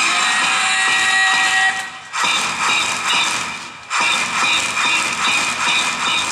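Loud yosakoi dance music played over loudspeakers, with two brief sharp drops in level, about two and four seconds in.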